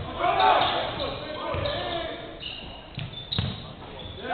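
Basketball bouncing on a hardwood gym floor a few times, with players' voices calling out across the hall.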